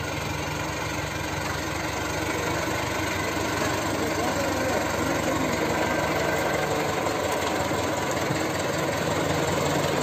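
HMT 5911 2WD tractor's diesel engine running steadily under load as it pulls a trailer heavily loaded with sugarcane, growing gradually louder as it approaches.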